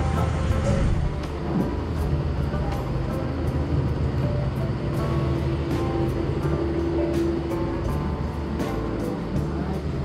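Shopping-arcade ambience: background music playing over a steady low rumble, with faint voices and scattered short clicks and knocks.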